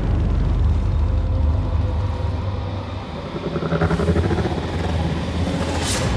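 Film-trailer sound design: a loud, deep rumble that holds steady, with a cluster of higher tones rising over it briefly about three and a half seconds in, and a sharp hit right at the end.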